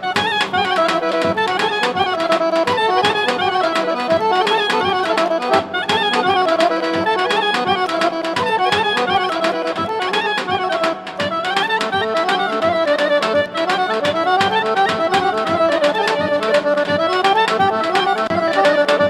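Bulgarian folk dance music for a horo line dance, with a busy melody over a steady beat.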